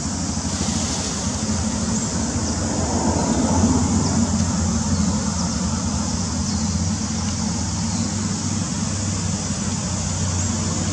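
Steady outdoor background noise: a low rumble with hiss, like distant road traffic, swelling a little a few seconds in.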